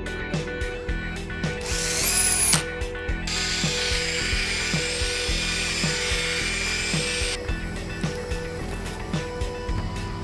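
Background music with a steady beat. Over it, a hand-held rotary polisher with a foam pad runs on a high-gloss speaker cabinet for about four seconds, starting around three seconds in and cutting off suddenly. A brief rising whine comes just before.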